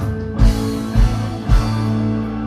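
Progressive rock band playing live: sustained electric guitar and bass notes with three heavy drum hits about half a second apart.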